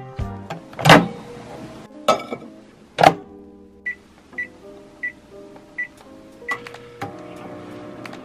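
Background music throughout. Two loud whooshes in the first three seconds, then five short, evenly pitched beeps from a MicroFridge microwave's keypad as its number and start buttons are pressed.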